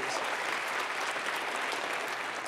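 Audience applauding, a steady clapping with no break.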